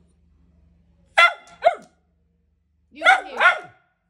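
Small long-haired dog barking: two high-pitched double barks, the first about a second in and the second about three seconds in.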